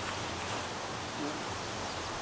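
Steady outdoor background hiss, as of wind and rustling foliage, with no distinct strikes or swishes.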